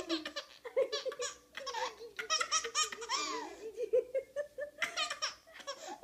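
A baby laughing in a run of short, repeated giggles with brief pauses between them.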